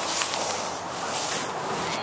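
A boxed dome tent being pulled down off the top of a metal cabinet: a continuous scraping rub of the packaging sliding across the cabinet top.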